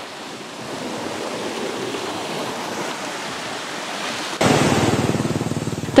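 Sea waves breaking on a shore: a steady rushing surf. About four seconds in, it cuts abruptly to a louder, rougher rushing noise.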